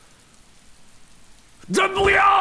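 Faint steady hiss, then near the end a man breaks into a loud, high-pitched, strained shout.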